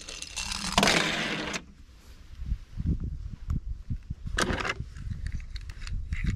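A small die-cast toy car rolling and scraping along a weathered wooden board for about a second and a half, followed by irregular bumps, knocks and rustles of the toy being handled.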